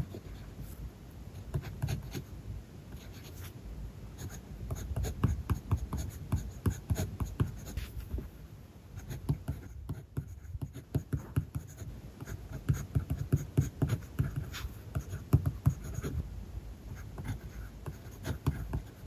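Kaweco Special mechanical pencil writing Japanese characters on paper: many short lead strokes in quick succession, with a brief pause about ten seconds in.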